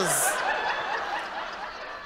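Theatre audience laughing at a joke, the crowd's laughter fading gradually.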